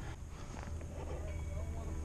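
Low, steady wind rumble on the microphone over open water, with a faint distant voice in the second half.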